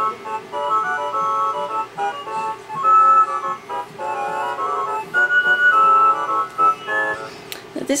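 A Hallmark musical light-up snowman figurine playing a tune from its built-in electronic sound chip: a melody of short, simple beeping notes in quick succession, several at a time.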